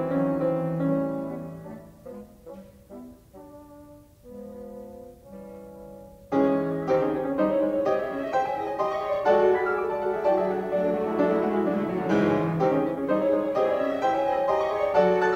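Piano with symphony orchestra in a live concert recording of late-Romantic music. A loud passage dies away over the first two seconds into a quiet stretch of soft, separate notes. About six seconds in, the full ensemble comes back in loudly and keeps playing.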